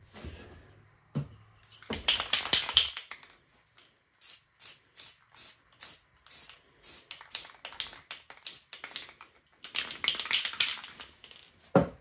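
Aerosol spray-paint can hissing in bursts: a longer blast, then a run of short quick puffs about two a second, then another longer blast. A single knock just before the end as the can is set down on the table.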